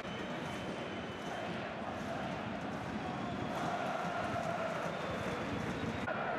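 Football stadium crowd noise: a steady mass of fans' voices, with faint sustained singing-like tones joining in about halfway through.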